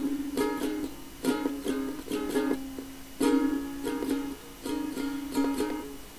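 Lo-fi instrumental folk music: an acoustic string instrument strummed in a rhythmic chord pattern, each sharp strum followed by ringing chords.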